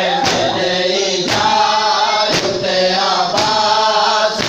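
A group of men chanting a noha in unison, with a sharp chest-beating strike (matam) from the whole group about once a second, keeping the beat of the lament.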